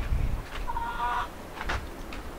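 A chicken giving one drawn-out call lasting about two-thirds of a second.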